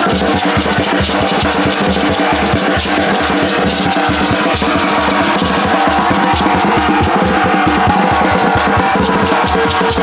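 Live drumming: a snare drum struck with sticks and a wooden hand drum played with the palms, keeping a fast, steady rhythm.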